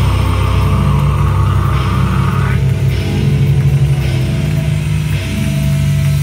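Live death metal band playing loud, with distorted guitars, bass and drums, heard from the crowd.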